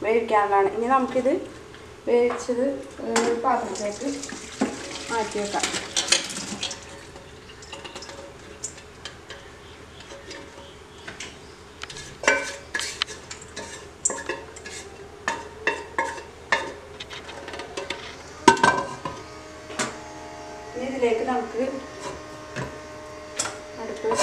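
Steel pots and kitchen utensils clinking, knocking and scraping on a stovetop: a run of light metal taps, with one sharper knock near the end.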